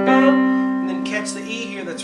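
A piano note struck at the start and left to ring and fade, the top note (middle C) of a left-hand C–G–C octave-and-a-fifth figure played slowly.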